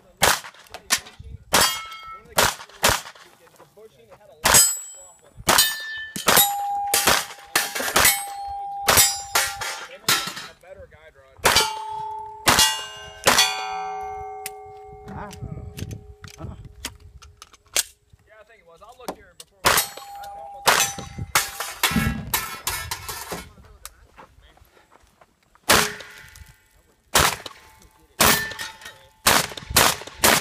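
A string of pistol shots in quick succession, with steel targets ringing like bells after the hits. Further shots come after a couple of short pauses.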